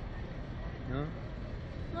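A single short spoken word over a steady low background rumble.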